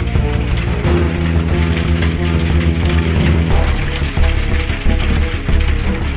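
Background music with sustained low notes that change about one second in and again midway, over a fast, dense clicking rhythm.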